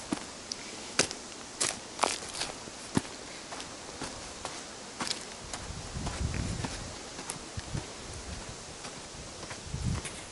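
Footsteps on dry leaf litter, twigs and dirt while climbing a bank, with a run of sharp snaps and crackles in the first few seconds. A low rumble comes in around six seconds in and again near the end.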